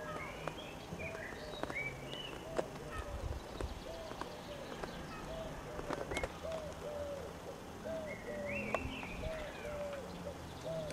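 Birds calling: a short call repeats about twice a second, with higher chirps above it and a few faint clicks among them.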